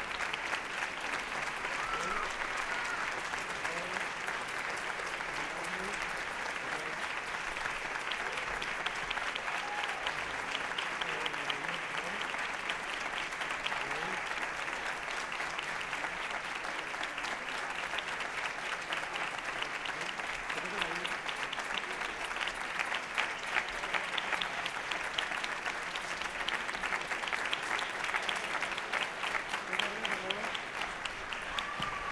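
Audience applauding: dense, steady clapping with a few voices calling out within it, growing a little louder in the last third.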